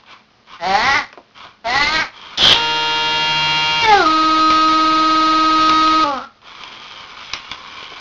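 Circuit-bent Furby's voice chip sputtering out short warbling fragments of its voice, then locking onto one held tone that steps down in pitch about four seconds in and cuts off about two seconds later, leaving a faint hiss with a few clicks. The held tone is the hold-trigger bend, set by a potentiometer, freezing a sample of the Furby's voice.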